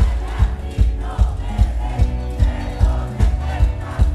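Live band with saxophone and trumpet playing an upbeat song over a fast, steady drum beat, about two and a half beats a second, with a crowd shouting along.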